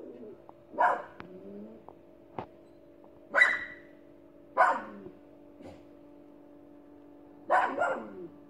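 A dog barking about four times, the barks spaced a second or more apart, over a steady hum.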